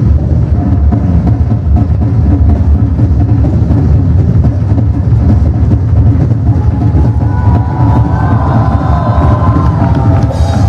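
Live heavy-metal drum solo on a kit with two bass drums, a dense, unbroken stream of fast kick and drum strokes under cymbals. About seven seconds in, a held higher tone joins on top.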